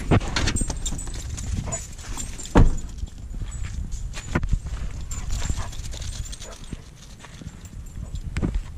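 Dogs jumping down from a pickup's back seat and running on a dirt road, with footsteps and paw steps crunching on dirt and gravel as a run of quick clicks and scuffs. One loud thud about two and a half seconds in.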